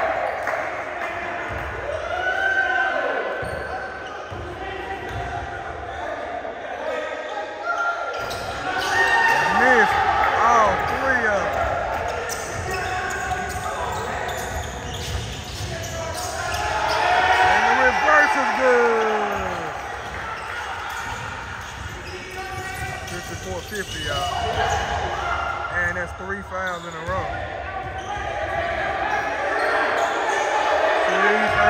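Basketball game in a gym: the ball bouncing on the hardwood court amid voices of players and onlookers, echoing in the large hall. The action grows louder twice, about a third of the way in and again past the middle.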